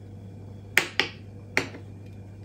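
Three sharp clicks, the first two close together and the third about half a second later, as a solid soap pot is handled by hand.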